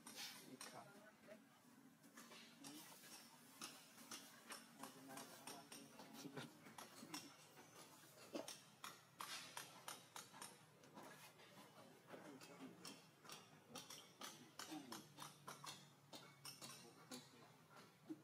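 Near silence, with many faint scattered clicks and ticks over a faint low hum.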